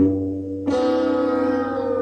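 Dramatic music sting: low held notes, then a bell struck about two-thirds of a second in, ringing on and slowly fading.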